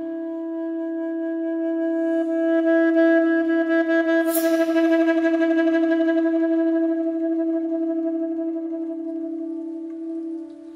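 Saxophone holding one long note that swells over the first three seconds, then sustains with a slight pulse and slowly fades. A brief high hiss sounds over it about four seconds in.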